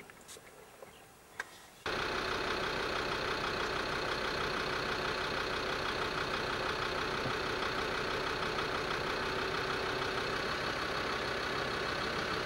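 Steady engine idling, as of a safari vehicle standing still, cutting in abruptly about two seconds in and holding at an even level.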